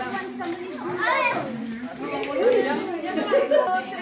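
Several children's voices chattering and calling over one another.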